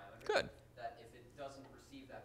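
Faint, distant speech of a student answering a question, picked up off-microphone, with one short louder sound about a third of a second in.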